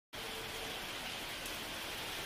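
A steady, even hiss of outdoor background noise with no distinct events.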